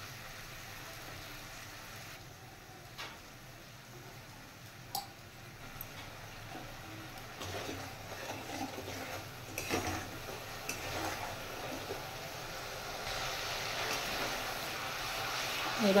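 Nigella seeds, green chilli paste, salt and turmeric sizzling softly in a little oil in a metal wok. From about halfway through, a spoon stirs the mixture, with light scrapes and clicks against the pan, and the sizzle grows louder.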